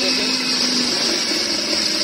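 Electric citrus juicer motor running with a steady high whir, spinning its reamer cone as orange halves are pressed down on it to juice them.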